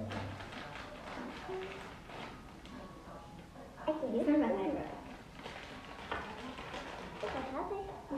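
A child's voice speaking briefly, twice, with faint handling clicks in between.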